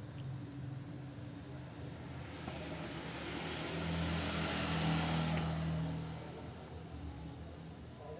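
An engine hum that swells and fades, as of a motor vehicle passing by, loudest about four to five seconds in.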